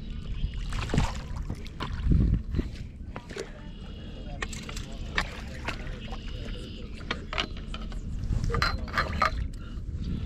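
Water splashing and sloshing as a hooked freshwater drum is brought into a landing net at the shoreline, with scattered clicks and knocks.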